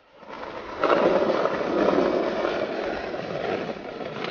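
Skateboard wheels rolling on concrete: a steady rough rumble that swells about a second in and slowly eases off.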